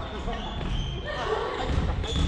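Voices echoing in a large gymnasium during a badminton rally, with thuds of footsteps on the wooden court.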